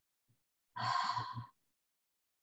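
A woman's audible sigh, one breathy exhale under a second long, about halfway through.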